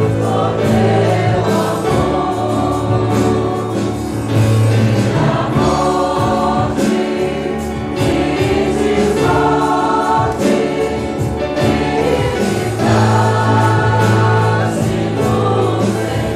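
Congregation singing a hymn in Portuguese in phrases of a few seconds, over sustained low instrumental notes.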